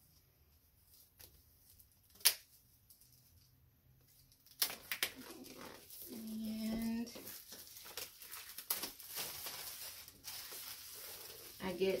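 Plastic shrink-wrap being pulled off a new laptop box by its pull tab, crinkling and tearing, starting about four and a half seconds in. Before that there is one sharp click about two seconds in, and a short pitched hum-like sound runs for about a second midway through the crinkling.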